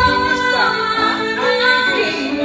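A woman singing karaoke into a microphone over an instrumental backing track, holding long notes that slide between pitches.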